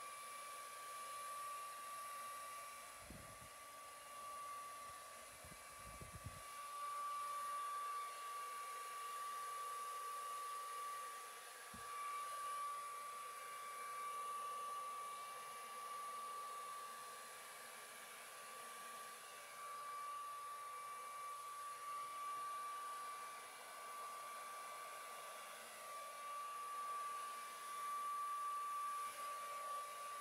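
Handheld blow dryer running on wet acrylic paint: a steady rush of air with a high whine, swelling and fading as it is moved over the canvas. A few faint low knocks sound about three and six seconds in.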